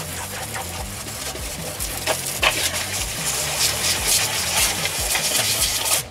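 Water from a hose spray nozzle jetting into the drained chamber of a pond drum filter: a steady hiss of spray and splashing as algae muck is flushed from around the drum gears.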